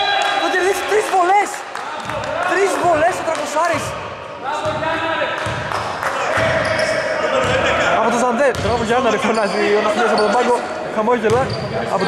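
A basketball bouncing on a hardwood gym floor amid players' voices calling out, all carrying the echo of a large sports hall.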